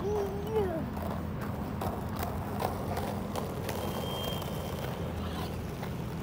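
Plastic wheels of quad roller skates rolling over rough asphalt with a steady low rumble, broken by irregular clacks as the skater strides.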